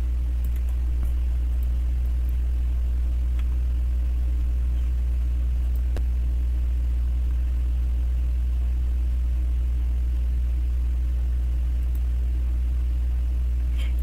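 A steady low electrical hum in the recording, unchanging throughout, with a few faint clicks.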